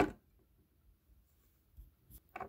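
Near silence: small-room tone with a few faint soft taps, just after a spoken word ends right at the start.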